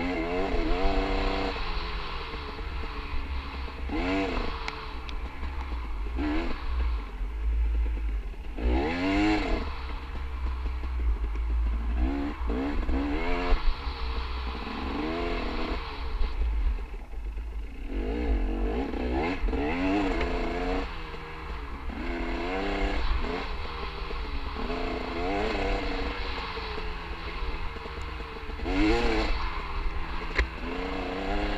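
Dirt bike engine ridden along a rough trail, revving up and dropping back again and again, with a rise every couple of seconds and longer pulls around the middle, over a steady low rumble.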